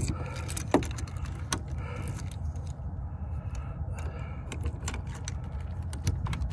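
Keys on a keyring jangling, with scattered sharp clicks, as a key is worked into the lock of an RV entry door, over a low steady rumble.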